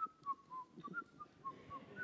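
A man softly whistling a short idle tune, a string of brief notes hopping up and down. It is the nonchalant whistle of someone pretending to have nothing to say.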